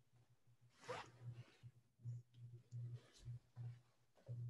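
Near silence: faint room tone with a few soft rustles and a faint low hum.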